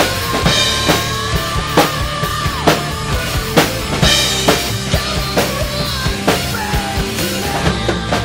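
Rock drum kit played along to a recorded metal song: bass drum, snare and cymbals keep a steady beat, with a strong hit a little more than once a second, over the song's melodic lines.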